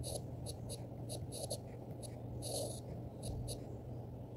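Pen writing out a handwritten formula: about a dozen short, irregular scratching strokes, faint, over a steady low hum.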